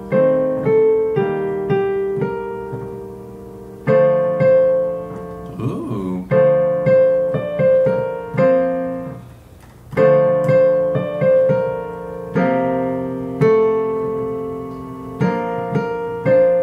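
Digital piano keyboard playing slow chords in short phrases that start over several times, with a pause after each: the player is trying out different harmonies for the ending of a piece.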